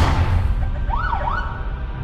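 A sudden loud hit with a deep low rumble opens the sound, and about a second in a siren wails up, down and up again.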